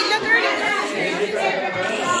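Several children's voices talking over one another, indistinct chatter with no clear words.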